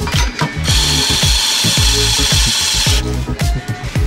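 Espresso grinder running for about two seconds, grinding coffee into a portafilter with a steady, high-pitched whir that cuts off abruptly. Background music with a beat plays throughout.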